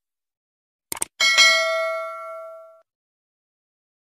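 Subscribe-button sound effect: two quick clicks about a second in, then a single notification-bell ding that rings out and fades over about a second and a half.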